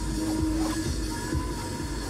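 Music playing on the car radio, heard inside the car's cabin over a continuous low rumble.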